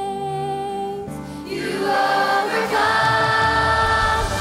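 A girl singing a solo line into a microphone in held notes over soft accompaniment; about one and a half seconds in, a children's choir and band come in and the music grows louder.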